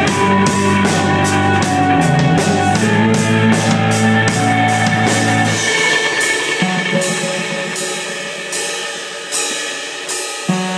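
Live indie rock band playing, with a steady drum-kit beat, low bass notes and guitar. A little past halfway the low notes drop out, leaving ringing cymbals that fade, with a couple of sharp drum accents near the end.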